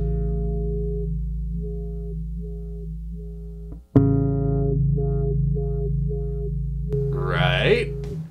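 Electric jazz bass through a Lusithand NFP filter preamp, neck pickup alone, holding a low note while the filter knob is turned back and forth, so the brighter overtones open and close in a wah-like sweep. The note is plucked again about four seconds in and swept the same way, a few times over.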